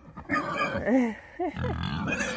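A pig calling: three or four short squeals about a second in, then a low grunt near the end, after a brief laugh at the start.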